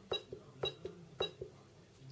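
Three presses of the down-arrow key on a CM Count Pro counting scale, about half a second apart, each a short click with a brief high key beep, as the menu steps down one line per press.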